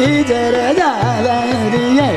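Hindustani khayal singing in Raag Khat: a male voice gliding through ornamented phrases, with harmonium and tabla accompaniment in medium-tempo jhaptaal.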